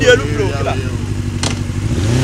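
Small motorcycle engine idling steadily, with a man's voice over it at the start.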